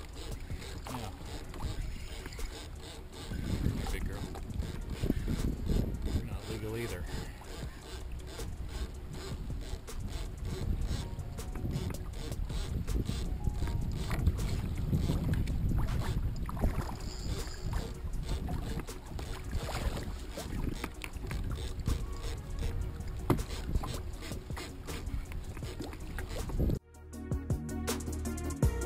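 Wind and water noise from a kayak on choppy open sea, heard on a small camera microphone, with scattered knocks and handling of fishing rods. About a second before the end it cuts sharply to music with a steady beat.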